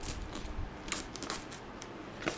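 Clear plastic packaging crinkling as it is handled: a low rustle broken by about five sharp crackles.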